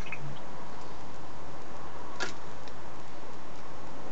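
Glass vase rim clicking once against the neck of a plastic bottle about two seconds in, over a steady hiss, while the vase drains etching liquid into the bottle.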